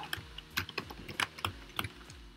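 Typing on a computer keyboard: a quick, uneven run of separate key clicks as a short word is typed.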